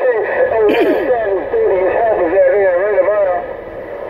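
A voice coming in over a Stryker SR-955HP radio transceiver, talk from another station on the channel, with a steady hiss of static under it.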